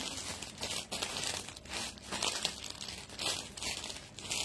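Irregular crinkling and rustling handling noise, rising and falling in uneven surges.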